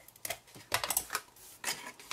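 Short, scattered clicks and crackles as a Fuse adhesive applicator is pressed along a cardstock tab, then the card being picked up and handled.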